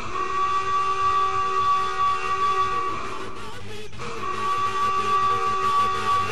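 Electronic music: a held chord of steady synthesizer tones, horn-like, that breaks off briefly about four seconds in and then comes back.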